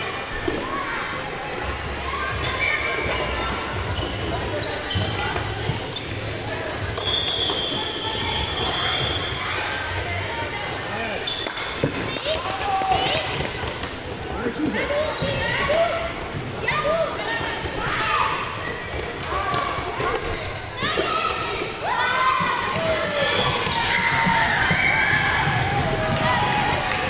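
Floorball play in an echoing sports hall: repeated knocks and clacks of sticks, ball and feet on the court, with children's shouts and voices throughout.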